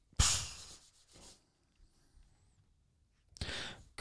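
A man sighs, a long breath out into a close microphone that fades over about a second, then near the end draws a short breath in.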